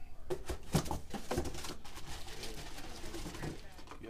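Cardboard packaging and plastic-wrapped parts being handled and pulled out of a box: several knocks, scrapes and rustles in the first second and a half, with a low voice murmuring after that.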